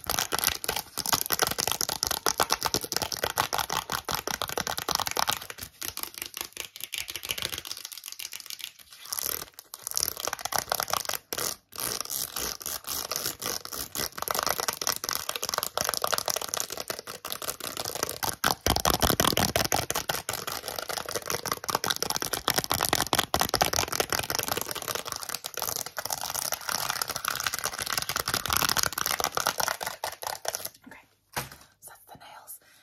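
Long fingernails tapping and scratching fast on a packaged set of press-on nails: a dense run of rapid clicks, with a couple of brief pauses.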